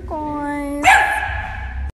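Small dog howling: a held, steady-pitched note, then a louder, brighter cry about a second in. The sound stops abruptly just before the end.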